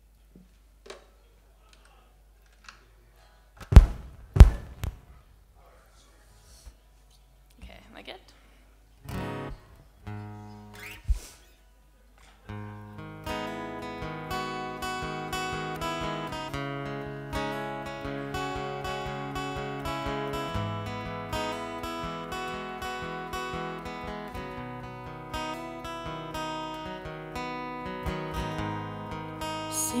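Two loud thumps about four seconds in and a few loose guitar notes, then from about twelve seconds in a steel-string acoustic guitar plays a song introduction with a steady pulse.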